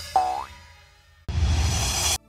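Cartoon 'boing' sound effect, a short tone sliding upward in pitch, just after the start and quickly fading away. A little past the middle a steady rushing noise comes in and runs on, the transition into the next song.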